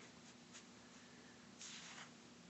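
Near silence with a faint steady hum, and a faint short scratch of a pen writing on a tablet near the end.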